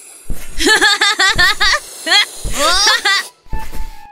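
A high-pitched cartoon voice making short wordless sounds: a quick run of syllables, then rising, whooping calls.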